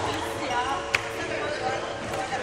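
A badminton racket strikes a shuttlecock once, a sharp crack about a second in, amid short squeaks of shoes on the court floor.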